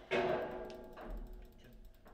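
A sharp knock on the table football table, its metal rods and frame ringing briefly after it, followed by a lighter click about half a second later.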